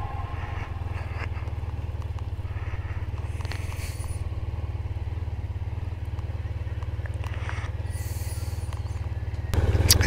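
Motorcycle engine idling at low speed with a steady low beat, while the bike rolls slowly to a stop on gravel.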